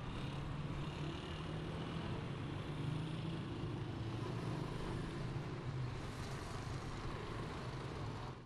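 Steady car engine hum and road noise from a vehicle driving along.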